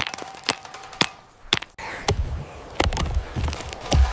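Stone striking stone in flint knapping: a series of sharp, irregularly spaced clicking knocks as flakes are struck off. A low rumble comes in about halfway.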